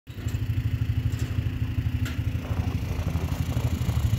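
An engine idling: a low, steady rumble with a rapid, even pulse.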